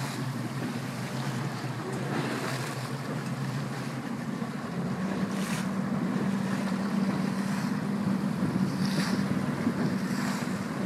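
A boat's motor running under way, a steady low hum whose note rises about halfway through, with water rushing along the inflatable hull and wind on the microphone.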